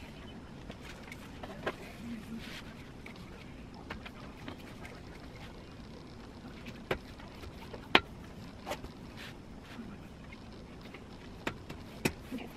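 Hand-work sounds at a longarm quilting frame: a few sharp clicks and taps, the loudest about eight seconds in, over a steady low hum, as quilt backing fabric is smoothed and clamped onto the frame's leader.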